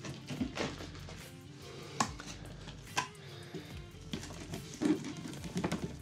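Soft background music with two sharp clicks about a second apart, and light knocks and rustles of a plastic tub and loose soil being handled against a glass terrarium.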